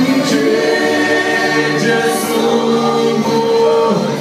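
A group of voices singing a slow song in long held notes.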